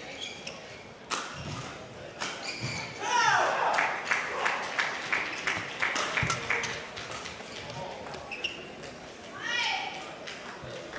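A badminton rally: rackets striking the shuttlecock in sharp clicks, and court shoes squeaking on the court, with a long squeak about three seconds in and another near the end.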